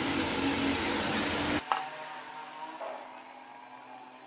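Mutton stock poured into a hot pot of frying meat and masala: a sizzle and pour that drops off sharply about one and a half seconds in, leaving a faint hiss that fades.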